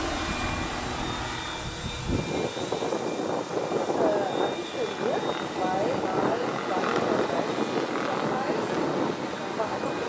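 Scale RC model of a tandem-rotor Boeing CH-47 Chinook flying a low pass, its twin rotors and drive making a steady noisy whirr. The sound changes abruptly about two seconds in, with the low rumble falling away.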